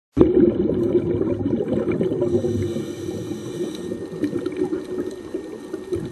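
Water heard from under the surface: a steady bubbling, gurgling rush with scattered small clicks.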